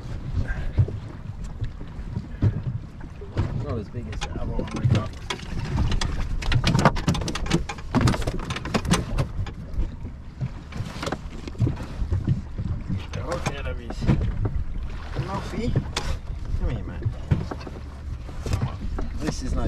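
Wind and water against a small aluminium boat, with a steady low rumble, many sharp knocks and clatters from gear being handled on the deck, and short bursts of voices.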